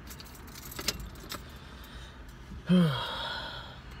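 Light clicks and rattles in the first second and a half, then, a little under three seconds in, a man's loud breathy sigh that falls in pitch and trails off.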